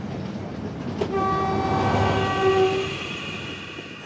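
Passenger train running along the track, then about a second in its horn sounds a steady warning blast lasting about two seconds, as a person is on the level crossing ahead.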